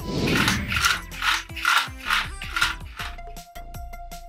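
A whoosh, then the whirring of a NAO humanoid robot's joint motors as it walks, about two whirrs a second, fading out about three seconds in, over background music.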